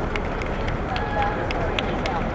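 Indistinct chatter of many voices, with scattered sharp clicks and taps running through it, several a second.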